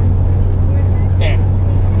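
1970 Porsche 911T's air-cooled flat-six engine running steadily while driving, heard from inside the cabin as a constant low drone.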